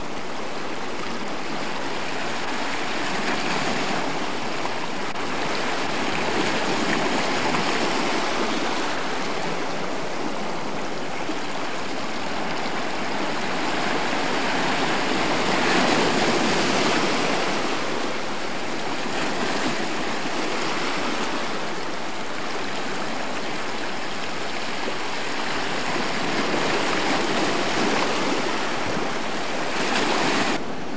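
Sea water rushing and splashing in a steady wash, swelling and easing every several seconds.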